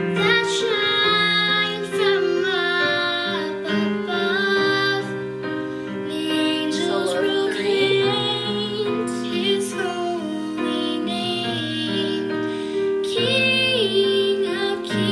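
A song with a female singing voice carrying the melody over piano accompaniment.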